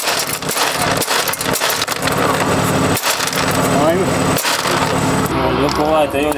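Loose gravel pebbles clattering onto asphalt as they fall out from under a car's underbody, stones picked up when the car ran off into a gravel trap. The clicks come thick and irregular throughout.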